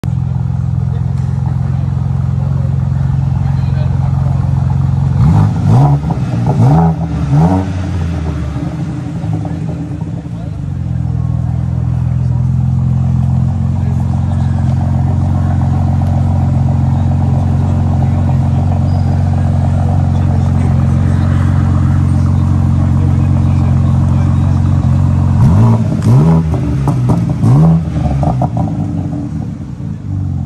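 2023 BMW M4 CSL's twin-turbo 3.0-litre straight-six idling steadily, blipped three times in quick succession about five seconds in and three more times near the end, each rev rising and falling quickly.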